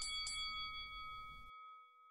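A bell-like chime, struck again just after the start, rings on with a clear tone that slowly fades away.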